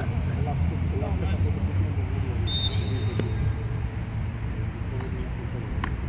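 Outdoor football pitch ambience: a steady low rumble of distant traffic under faint distant shouts of players. A short, high whistle sounds about two and a half seconds in, and a ball is kicked with sharp knocks twice.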